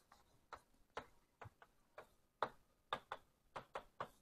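Faint, irregular taps and clicks of writing on a board, about two a second.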